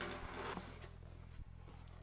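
Cardboard shipping box being opened by hand: a short rustle of the flaps and slit tape, then a few light taps.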